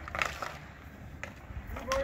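Hockey sticks scraping and clacking on outdoor rink ice during a scramble in front of the net, with a few sharp knocks.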